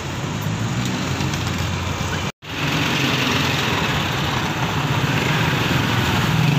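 Street traffic: engines of cars and motorcycles running and passing on the road, with a brief break to silence about two seconds in and the engine sound growing louder near the end.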